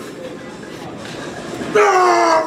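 Gym background murmur, then about three-quarters of the way in a man lets out a long, loud, drawn-out yell, 'wuuaaaa', falling slightly in pitch, while straining over a barbell row.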